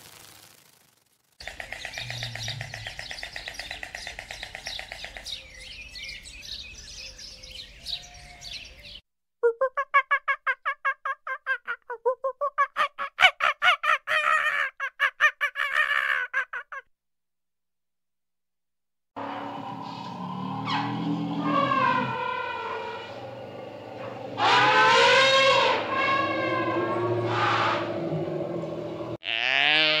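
A series of different animal calls, heard as separate edited clips with short silences between them: first a steady pitched call, then a quick run of repeated calls, then calls that rise and fall in pitch.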